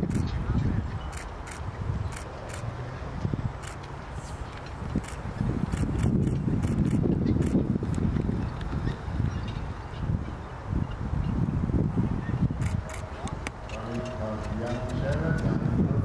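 Wind buffeting the microphone in gusts, under indistinct voices in the background, with the faint hooves and harness of a four-pony carriage team. A voice-like call comes in near the end.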